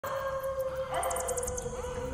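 Canine howling in a Halloween sound-effects mix: one long steady howl, with a second howl sweeping upward about a second in. Faint, fast, high ticking runs through the middle.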